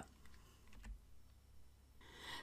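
Near silence, with a few faint computer keyboard clicks around the middle.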